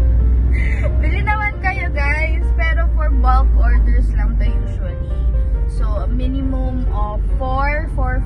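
Steady low rumble of a car's engine and road noise heard inside the cabin while it drives, under a woman's talk and background music.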